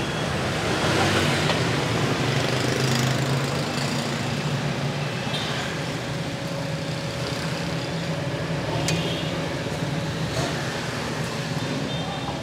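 Steady street traffic noise from passing motorbikes and cars, with a couple of sharp knocks in the second half.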